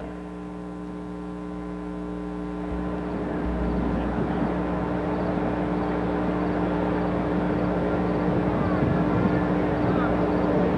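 Engine of the mobile starting-gate car growing steadily louder as it approaches with the field lined up behind it, over a steady electrical hum.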